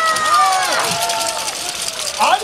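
Dancers and crowd shouting and cheering in the street, with several long cries gliding downward in pitch during the first second, over a steady high clatter.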